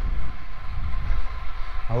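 Wind buffeting a clip-on lapel microphone on a moving road bike: a loud, uneven low rumble that rises and falls.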